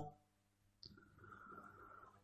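Near silence: room tone in a pause between spoken phrases, with one faint tick about a second in.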